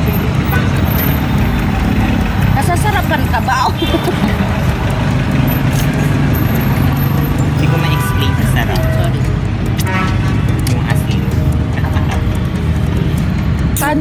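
Steady low rumble of a moving road vehicle heard from inside the cabin, with background music and scattered voices over it.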